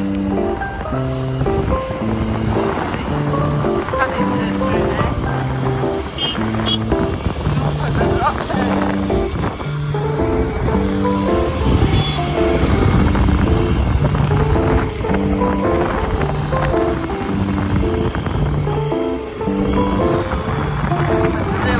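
Background music: a melody of held notes moving in steps over a bass line, with a low rumble of wind and road noise underneath.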